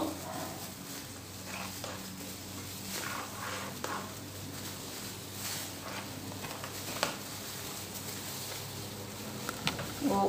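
Quiet handling sounds of plastic gloves and a plastic-film cake-ring lining while mousse filling is spread by hand, with soft rustles and a few light clicks. A steady low hum runs underneath.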